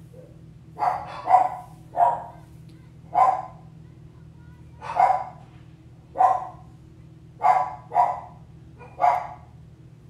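A dog barking repeatedly: about nine short single barks at uneven spacing, starting about a second in, over a steady low hum.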